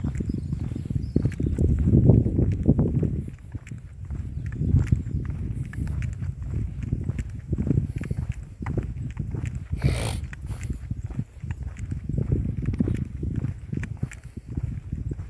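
Wind buffeting the microphone in an uneven low rumble while footsteps tap steadily on the asphalt road, with a brief rustle about ten seconds in.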